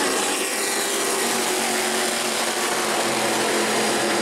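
Engines of a pack of E-Mod modified race cars running hard as the field comes past on a restart, a loud, steady blare of many engines together.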